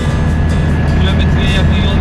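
Steady low engine drone of a moving vehicle, heard from inside it.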